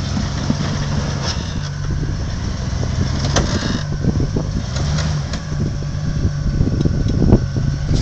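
Engine of a lifted Willys pickup running at low revs as it crawls over boulders, its pitch lifting briefly a few times with small throttle rises. Sharp clicks and knocks are scattered throughout.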